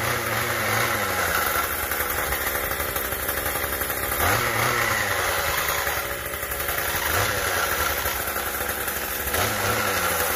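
Troy-Bilt TB80EC 27cc two-stroke string trimmer engine running, its revs rising and falling several times as the throttle is blipped. The engine runs but the trimmer head is not spinning at all: a fault in the gear head.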